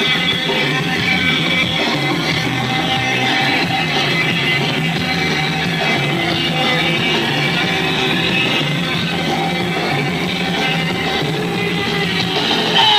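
A hardcore punk band playing live at a steady loud level: distorted electric guitar, bass and drums.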